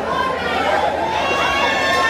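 A packed room of voices: crowd chatter and calling out, many people at once, with no music playing. It grows a little louder toward the end.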